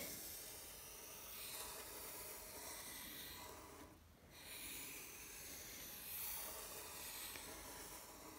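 Marker pen drawing long curved lines, a faint steady scratchy hiss of the felt tip sliding on the surface, broken off briefly about halfway through.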